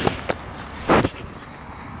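Footsteps on gravel and dry leaves: a few short steps, with a louder one about a second in.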